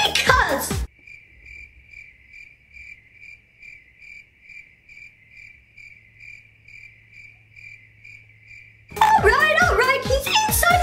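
Crickets-chirping sound effect: an even, high-pitched chirp repeating about two and a half times a second for some eight seconds, starting and stopping abruptly. It is the comic 'crickets' cue for an awkward silence.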